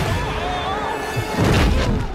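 Film sound effect of a spell striking someone and hurling them down: a sustained, loud blast with a heavy crash about a second and a half in, over music and a voice crying out.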